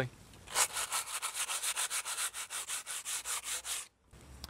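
Dried ready-mix filler in masonry cracks being rubbed down, making quick rhythmic scratchy strokes, roughly eight a second. The sanding stops abruptly just before the end, once the filled cracks are smoothed ready for paint.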